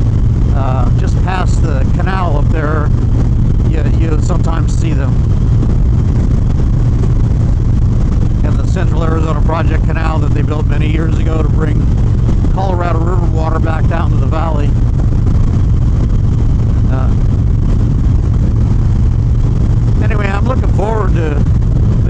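Harley-Davidson Dyna Street Bob's Twin Cam 103 V-twin engine running steadily at highway cruising speed, a constant low drone with no change in pace.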